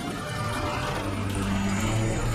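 Cartoon background music with a steady low drone and a rushing noise underneath, from a boat's engine and rough water.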